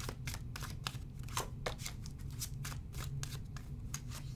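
A deck of oracle cards being shuffled by hand: quick, irregular clicks and slaps of card against card, several a second.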